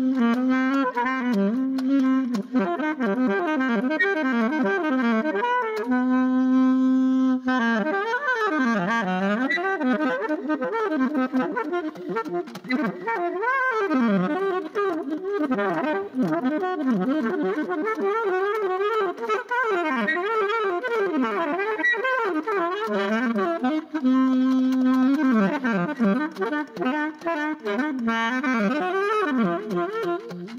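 Solo alto saxophone improvising in free-jazz style: fast, winding runs played without a break, interrupted by a long held low note about six seconds in and again late on.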